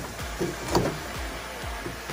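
Light handling and scraping at the edge of a freshly drilled hole in the van's sheet-metal quarter panel as the burrs are cleaned off by hand, with one sharp click about three-quarters of a second in.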